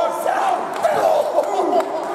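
Crowd of wrestling spectators yelling and shouting over one another, several high-pitched voices at once.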